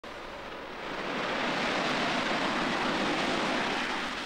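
Blue Angels F/A-18 Super Hornet jets on their takeoff roll, a loud, even rush of jet engine noise that builds over the first second and a half and then holds steady.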